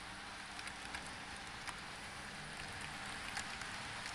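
Model train running along layout track: a steady rolling hiss with scattered light clicks from the wheels on the rails, over a faint low motor hum.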